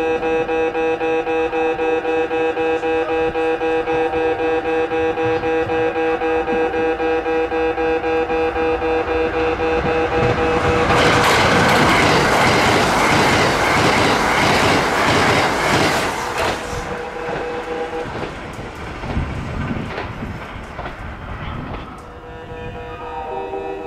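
Japanese level-crossing alarm ringing in a steady, pulsing electronic tone as a Kintetsu Urban Liner (21000 series) limited express approaches. About 11 seconds in, the train passes at speed: a loud run of wheels clattering over the rail joints for about five seconds. It then fades as the train recedes, and the crossing alarm stops shortly afterwards.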